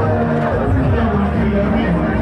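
Loud, steady hubbub of many people talking at once, with music playing underneath.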